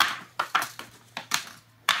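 Several light, sharp taps and clicks as curled strips of gold foil heat-wrap tape are dropped one after another onto a cardboard sheet.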